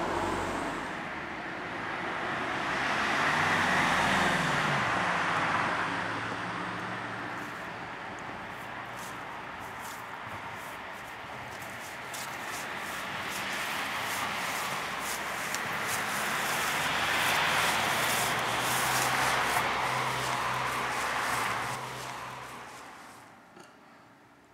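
Road traffic: passing vehicles swell and fade twice, loudest about four seconds in and again around eighteen seconds, dying away near the end.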